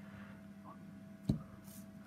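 Quiet room tone with a faint steady hum, and a single light knock about a second and a quarter in as an inked guitar back plate is set and pressed onto paper on a wooden table.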